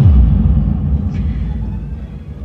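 Sudden deep boom sound effect: a sharp hit, then a low rumble that slides down in pitch and slowly fades.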